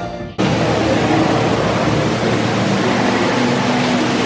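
A steady rush of falling water from indoor waterfalls, with faint music underneath. It cuts in suddenly just after the start, replacing stage-show music.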